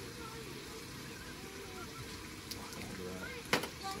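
Food frying in a steel pot, a steady sizzling hiss, with one sharp click about three and a half seconds in.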